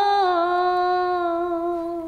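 A woman singing a Bengali folk song without accompaniment, holding one long note that slips a little lower near the start and then fades.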